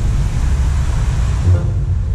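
Water from the dancing-fountain jets splashing down into the pool as a steady hiss over a low rumble. The hiss thins out about one and a half seconds in as the jets die away, with a short low thump at about the same moment.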